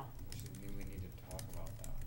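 Typing on a laptop keyboard: an irregular run of light key clicks, with faint low voices and a steady low hum underneath.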